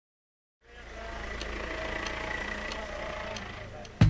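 Car engine and road noise heard from inside the cabin, fading in from silence to a steady low rumble, with faint ticks about every two-thirds of a second.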